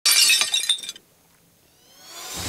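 Glass-shatter sound effect for a news intro: a loud crash of breaking glass lasting about a second, followed near the end by a rising whoosh.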